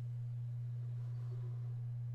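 Steady low electrical hum over otherwise quiet room tone, with no distinct sound event.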